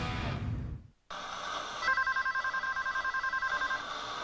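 The last of a country-rock guitar song fades out. After a brief silence, an electronic telephone ringer warbles in a rapid trill for about two seconds.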